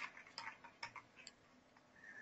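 A few faint clicks of computer keyboard keys being pressed, as a number is typed into a spreadsheet cell.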